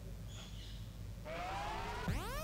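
A faint low hum, then about a second in a rising electronic whoosh sweeps upward in pitch as a transition effect leading into electronic music.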